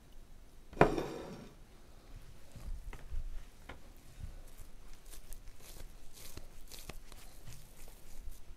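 Hands squeezing and rolling soft mashed potato filling into balls over a glass bowl: faint soft clicks and rustles, with one sharp knock about a second in, the loudest sound.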